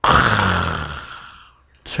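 A man's long, heavy sigh, breathy with a little voice in it, starting suddenly and fading away over about a second and a half.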